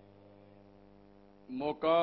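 Faint, steady electrical mains hum from the microphone and loudspeaker system, made of a set of even, unchanging tones, heard during a pause in a man's amplified speech. His voice comes back about three-quarters of the way through.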